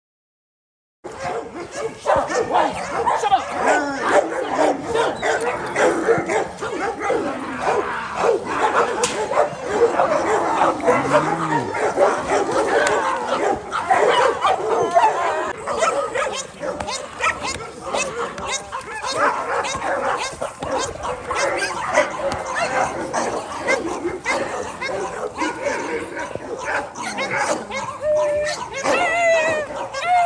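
Rottweiler barking repeatedly during protection bite work against a decoy holding a jute bite pillow, starting about a second in, with people's voices.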